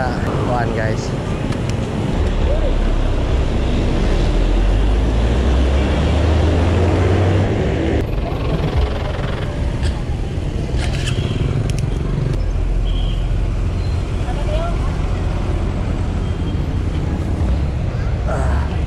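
Wind noise rumbling on a camera microphone on a moving bicycle, mixed with tyre noise and passing road traffic.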